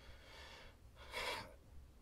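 A man's breathing in a pause between sentences: a faint breath in, then a short, louder breath about a second in.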